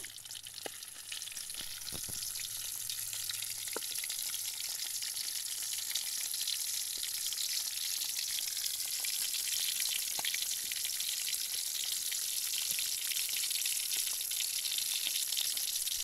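Fish pieces frying in hot oil in a metal kadai: a steady sizzle with scattered crackling pops. In the first few seconds a metal ladle knocks lightly against the pan a few times.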